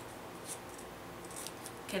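Scissors cutting paper: a few short, quiet snips as the corner of a glued cover sheet is trimmed, about half a second in and again near the end.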